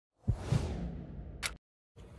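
Whoosh sound effect of an intro title card: a rushing sweep that starts a moment in and fades away over about a second. It ends with a short, sharp click.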